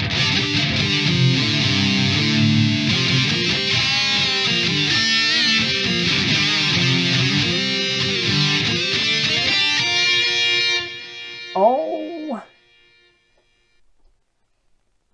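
Electric guitar with distortion played through a Boss Harmonist pitch-shifter pedal, a run of changing notes with the pedal adding a harmony line. The playing stops about eleven seconds in and the notes die away.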